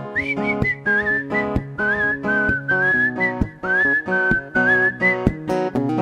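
Acoustic guitar strummed in a steady rhythm with a whistled melody over it. The whistling comes in just after the start, slides between a few notes and breaks off near the end.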